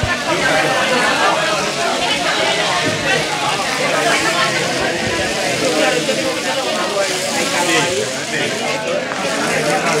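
Indistinct chatter of several people talking at once in a room, with no clear words standing out.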